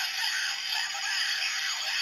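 Bandai DX Gamer Driver toy belt playing electronic game-style music through its built-in speaker, thin and tinny with no bass.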